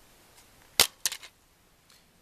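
Plastic DVD case being snapped open: one sharp click a little under a second in, then a few lighter clicks.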